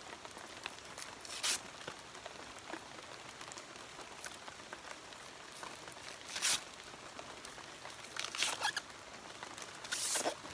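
Abaca leaf sheath being torn into strips by hand: short, dry ripping rasps about a second and a half in, again about six and a half seconds in, and a double rip near the end.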